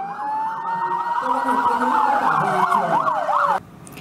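Police car siren: a slow rising-and-falling wail, with a faster warbling yelp joining over it near the end. It cuts off abruptly about three and a half seconds in.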